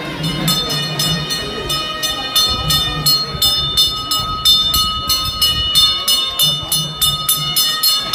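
Temple bells rung rapidly and evenly, about four strikes a second, their ringing tones held between strikes.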